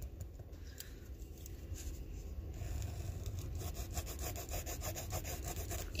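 Pencil point scratching on a paper workbook page, going back and forth over the same line in quick repeated strokes, louder in the second half.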